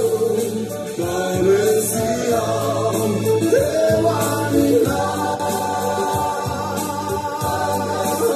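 A Malagasy church youth choir singing an upbeat gospel song in several voices over a band with a steady beat.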